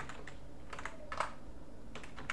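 A handful of separate keystrokes on a computer keyboard, finishing a short typed command and pressing Enter.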